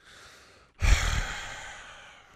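A man's heavy, exasperated sigh breathed straight into a close microphone: a breathy rush, with a thump of breath on the mic, starting about a second in and fading away over about a second.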